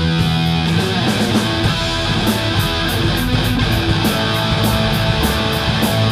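A live rock band playing in a studio room: electric guitars, a keyboard and a drum kit keeping a steady cymbal beat.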